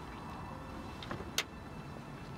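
A person climbing out of a parked car's open back door: quiet low rumble of outdoor ambience with a single sharp click about one and a half seconds in.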